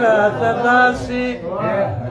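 An old man's voice singing a Pashto verse in a chanting style, sliding between pitches and holding some notes steady.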